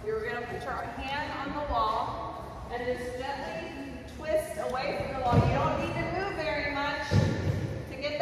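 People talking in a large room, their words not made out, with two low thumps about five and seven seconds in.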